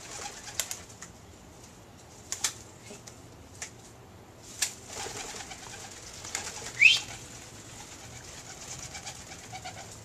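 White dove flapping its wings while perched on a hand-held stick, giving sharp wing claps every second or two. A short rising squeak comes about seven seconds in.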